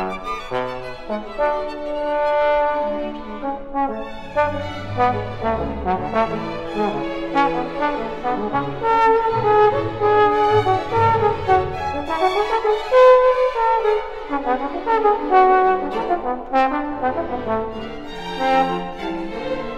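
Trombone playing a solo melodic line over string orchestra accompaniment, dipping into low notes a few seconds in and again near the middle.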